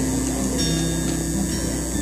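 Live rock band holding a chord between sung lines: a few steady low notes sustain evenly, with no singing.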